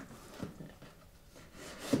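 Faint rubbing and scratching of hands on a cardboard shipping box as its packing tape is picked at, with two small clicks in the first half second.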